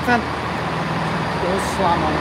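A stationary passenger train running at the platform, a steady low hum with no change.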